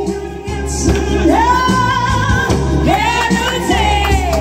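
A woman singing karaoke into a microphone over a backing track, holding long, wavering notes.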